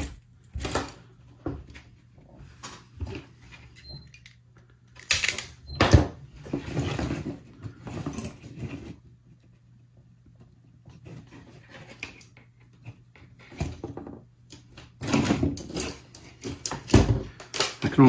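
Scattered clicks, taps and rustles of wire and small hand tools being handled against the plastic housing of a bug zapper, with a few sharper knocks about five, six and seventeen seconds in, over a faint steady low hum.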